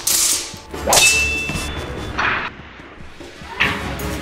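A thin metal wushu straight sword (jian) clashes with an opponent's sword. About a second in it gives one sharp, ringing metallic clang that fades over about half a second. Short swishes of swung blades come before and after it.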